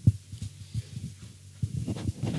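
A string of soft, low, muffled thumps at an uneven pace, the first one the loudest.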